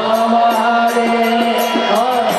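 Devotional kirtan chanting: a voice holding a long sung note over a steady beat of small hand cymbals striking about three to four times a second.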